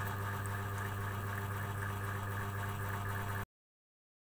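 A steady low hum with a constant drone of overtones that cuts off abruptly about three and a half seconds in.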